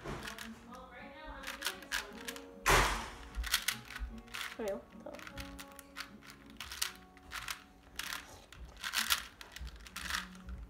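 Plastic puzzle cube being turned quickly by hand, its layers clicking and clacking in a fast irregular run, with a louder clack about three seconds in.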